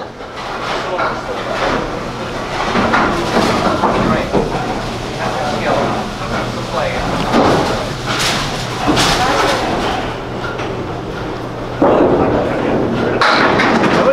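Candlepin bowling alley sound: a ball rolling down the lane, then pins clattering as they are knocked down near the end.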